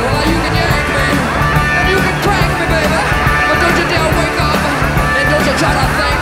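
Live hard rock: a band playing loud with electric guitars, bass and drums.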